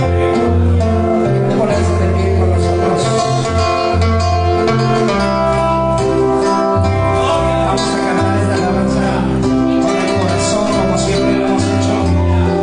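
Live Christian praise song played on acoustic guitar with a strong, moving bass line, with a man singing into a microphone.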